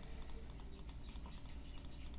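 Computer mouse clicking repeatedly and faintly, over a low steady hum.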